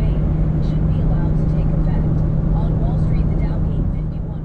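Steady road and engine noise inside a car cabin at highway speed, with a constant low hum, easing slightly near the end.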